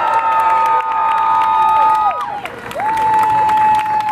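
Crowd cheering and clapping after a band is announced. Several long, high-pitched held cheers overlap and fall away about halfway through, and a new one rises soon after and is held to the end.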